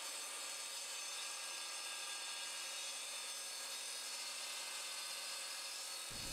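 Evolution Rage 3 mitre saw fitted with a diamond blade, running steadily as it grinds down through a steel-reinforced concrete post: an even, unbroken grinding noise.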